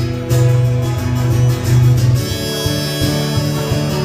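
Acoustic guitar strummed steadily in an instrumental break between sung verses, with harmonica coming in about halfway through.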